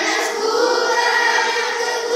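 A class of young schoolchildren singing a Malay song together in chorus, their voices holding long notes without a break.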